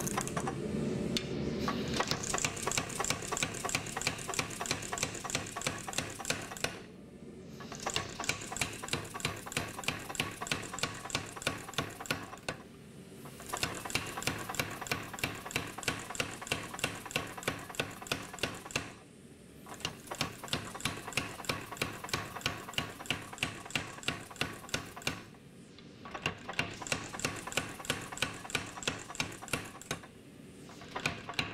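Blu Max 110 power hammer striking a glowing steel billet in fast, even blows, about five a second. The blows come in runs of several seconds, broken by four short pauses of about a second each.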